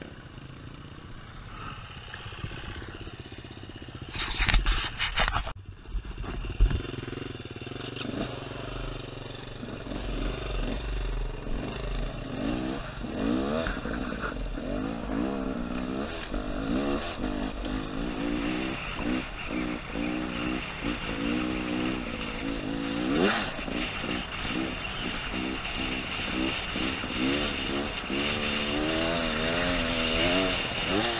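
Beta enduro motorcycle engine running at low revs, then pulling away and accelerating hard, its pitch climbing and dropping again and again as it shifts through the gears. There is a brief loud rush of noise about four seconds in.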